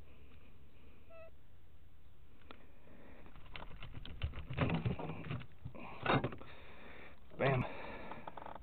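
Unhooking a pike in a landing net: scattered clicks and rattles of pliers and a metal spoon lure, starting about three and a half seconds in, mixed with the angler's sniffs and breathy, wordless vocal sounds in short bursts.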